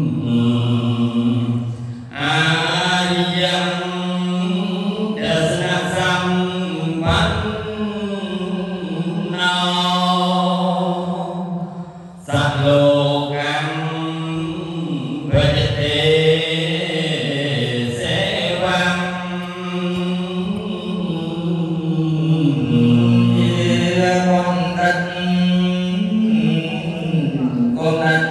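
A man's voice chanting a Khmer Buddhist text in long, melodic, held phrases, with short breaks for breath about two and twelve seconds in.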